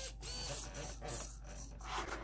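Small hobby servos in a camera pan-and-tilt mount whirring in a few short moves as the camera is swung left and right by radio control, mostly in the first second.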